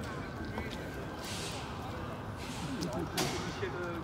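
Steady outdoor background noise with indistinct voices of people nearby, mostly in the second half, and a sharp click about three seconds in.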